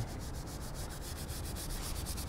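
Detailing brush scrubbing foamy all-purpose cleaner into a textured black plastic side step, a steady soft scrubbing of the bristles on the plastic.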